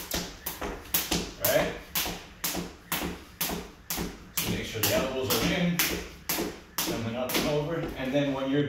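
A thin cable jump rope turning single-unders, striking a hard wood-look floor on each turn: sharp, evenly spaced taps about twice a second.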